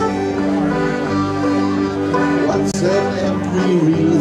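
Live country music from a jam group: string instruments playing steadily with held melody notes, no clear singing.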